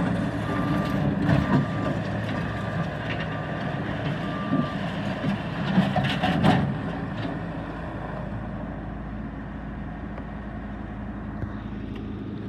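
A Bobcat skid-steer loader's diesel engine running, with its backup alarm beeping about once a second for the first few seconds as it reverses. A few loud clanks come around six seconds in, and then the engine runs on steadily and a little quieter.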